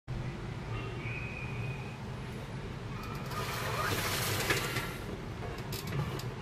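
Steady low hum with a swell of hissy noise in the middle, then a few light clicks near the end as a hand picks up the cardboard charger box.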